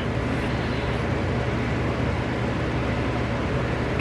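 Steady whir of an electric fan with a low motor hum underneath, even throughout.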